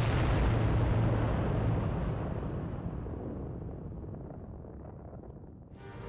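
A staged explosion-like boom played over the show's sound system, with a deep rumble that fades slowly over about five seconds. New music cuts in just before the end.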